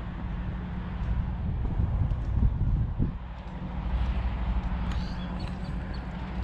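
Wind buffeting the microphone: a low, fluttering rumble that swells and eases.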